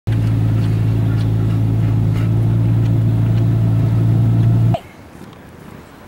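Steady low engine hum heard from inside a car, cutting off suddenly about five seconds in.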